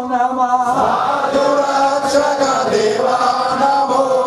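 Ayyappa devotional song: voices chanting in long held notes, moving to a fuller new note about a second in.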